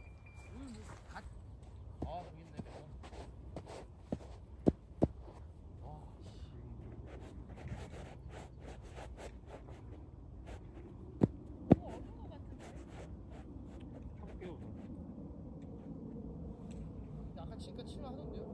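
Quiet outdoor ambience with low, faint voices now and then, broken by two pairs of sharp clicks, about five seconds in and again about eleven seconds in.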